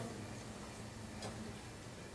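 Two faint ticks, one at the start and one about a second later, over a steady low hum.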